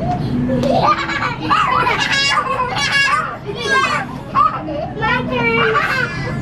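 Several young children playing, chattering and shrieking in high-pitched voices that rise and fall, with hardly a break.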